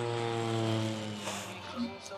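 Propeller airplane sound effect: a steady engine drone whose pitch sinks slightly, fading out near the end.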